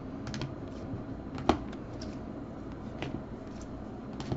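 Rigid plastic top-loader card holders clicking against each other as a stack of trading cards is sorted by hand: a few scattered sharp clicks, the loudest about a second and a half in.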